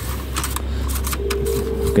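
Engine oil dipstick being fed back into its tube and seated, a run of light clicks and scrapes as it is worked in, over a low steady rumble.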